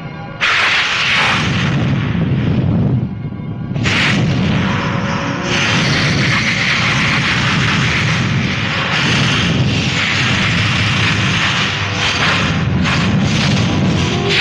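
Loud, deep rumbling roar of a film sound effect for erupting lava, breaking in suddenly about half a second in, dipping briefly around three seconds, then continuing steadily.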